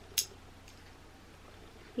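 A single sharp click of a small nail clipper snipping a baby's fingernail, just after the start.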